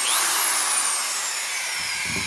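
Milwaukee 6760 drywall screwdriver motor run on its trigger: it revs up sharply right at the start, then its whine falls steadily in pitch as the motor slows. The trigger's speed-control potentiometer is worn out by drywall dust and does not engage until it is almost halfway in, but the tool still runs.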